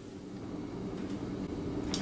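Steady low background hum of room tone, with no distinct event.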